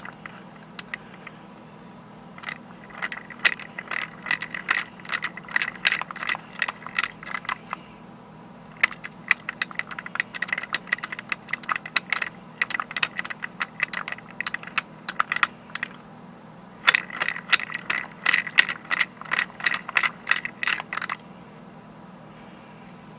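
Glass marbles clicking against one another and the wooden parts as a hand-cranked wooden rotary marble lift is turned, in three runs of rapid clicks with short pauses between. The lift is working smoothly, without jamming.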